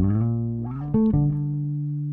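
Five-string electric bass guitar playing a short gospel lick: a plucked note that slides upward, then a new note plucked about a second in and left ringing, resolving on the tonic.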